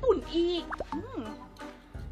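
Light background music under a woman's speech, with a short comic plop-like sound effect with a quick pitch glide about a second in.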